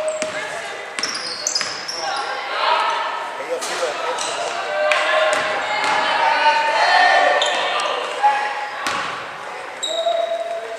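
Indoor basketball game sound in a gym: a basketball bouncing on the hardwood court with scattered sharp knocks, under voices calling out from players and spectators.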